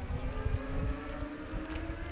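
Wind rumbling and buffeting on the microphone, with a faint steady hum underneath.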